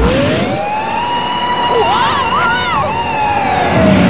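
A cartoon character's long drawn-out yell. It rises in pitch at the start, wavers about halfway through and slowly falls away near the end.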